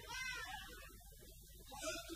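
A short meowing cry at the very start, its pitch arching up and falling away.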